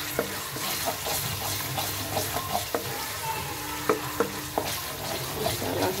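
Thick masala sizzling in a non-stick kadai as a spatula stirs and scrapes through it, with scattered light clicks of the spatula against the pan.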